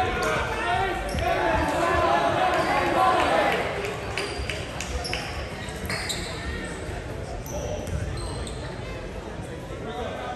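Players' and onlookers' voices calling out in a school gym for the first few seconds, then a volleyball bouncing on the hardwood court, with sneakers squeaking on the floor.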